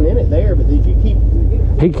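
A side-by-side UTV's engine running with a heavy, steady low rumble as the machine tries to get up a steep, rutted dirt climb. A man starts talking near the end.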